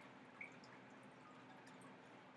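Near silence: faint room hiss with a single tiny tick about half a second in.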